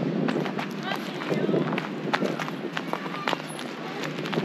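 Footsteps crunching irregularly on dry leaf litter and dirt, several steps a second.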